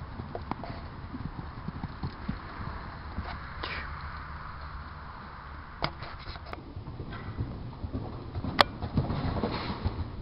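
Horse hooves on arena footing and turf, soft irregular thuds under a steady low rumble, with a few sharp clicks.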